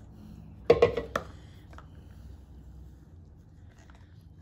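Two knocks about a second in as a plastic pitcher is set down on a tabletop, then faint handling sounds as cornstarch and water are mixed by hand in a small cup.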